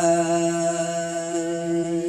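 A single voice holding one long, steady note of a Red Dao folk song.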